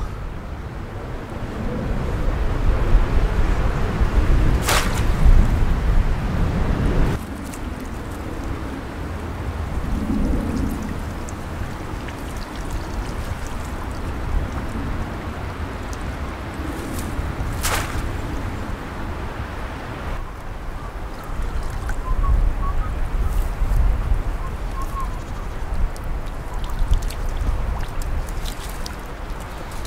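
Outdoor noise dominated by wind rumbling on the microphone, with a net crayfish trap being handled and moved about at the water's edge. Two short sharp clicks stand out, about five seconds in and again near eighteen seconds.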